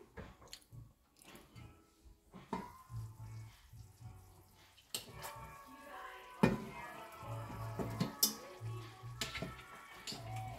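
Chicken simmering quietly in a covered stainless frying pan. About halfway through, the metal lid is lifted and a fork knocks and scrapes against the pan as the chicken is turned.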